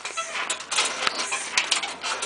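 The go-kart's suspension is being worked, giving a quick, irregular run of light clicks and knocks from the shocks and frame as the shock fluid works.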